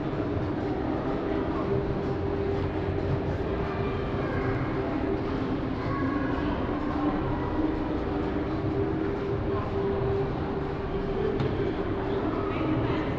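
Indoor shopping-centre ambience: a steady low drone with faint, distant voices echoing in the large hall.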